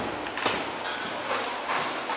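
Kickboxers sparring: one sharp impact about half a second in, over a steady background hiss of the hall.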